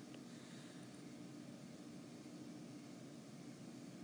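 Near silence: faint, steady background hiss of room tone.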